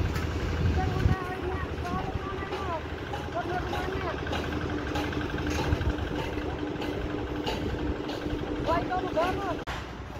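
An engine running steadily, a low rumble heaviest in the first second, with a steady hum joining about halfway through.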